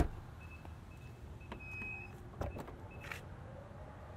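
A sharp knock, then a few short high electronic beeps and light clicks from a 2020 Mazda CX-5's power liftgate being triggered, before it starts to rise.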